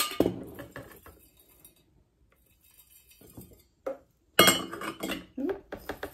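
A stainless steel funnel and a blender jar knocking and clinking against glass mason jars as powder is poured through. A knock at the start, a quieter stretch in the middle, then a sharp metal-on-glass clatter about four and a half seconds in that trails off over the next second.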